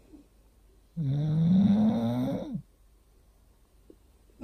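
English bulldog snoring in his sleep: one long rasping snore starting about a second in and lasting about a second and a half, rising slowly in pitch.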